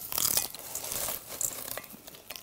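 Popcorn being eaten by the handful: a dense run of small crackles and crunches as a hand rummages in the bowl and someone chews.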